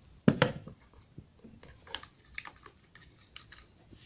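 Plastic spoon stirring thick porridge and water in a small plastic bowl, scraping and clicking against the bowl. One louder knock comes about a third of a second in, then a string of light clicks and scrapes.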